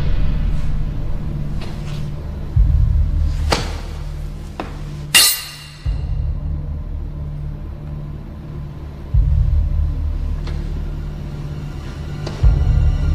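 Tense film-score music: a low rumbling drone that swells anew about every three seconds, with several sharp hits. The loudest hit comes about five seconds in and rings on briefly.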